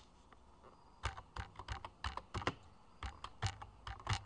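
Computer keyboard being typed on: a string of quick, uneven key clicks that starts about a second in.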